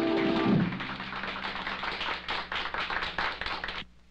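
A song's last sustained note, with orchestra, ends about half a second in. Scattered audience applause follows, many quick irregular claps, and cuts off suddenly near the end.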